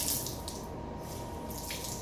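Tap water running steadily into a bathroom sink while a towel is rinsed and squeezed out, with a brief louder splash near the end.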